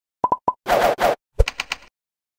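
Logo intro sound effect: three quick pops, two short whooshes, then a low thud followed by a few quick bright taps that fade out.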